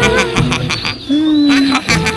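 Cartoon soundtrack: light background music, then a short held hooting 'ooh' sound from about one second in, lasting under a second.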